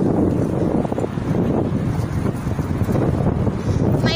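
Wind buffeting a phone's microphone while riding a bicycle: a steady, loud rumbling rush.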